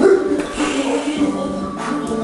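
Music with a melody plays throughout, with a short thump near the end.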